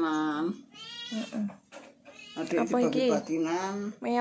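A domestic cat meowing several times: a short call at the start, a brief one about a second in, and a longer drawn-out meow in the second half.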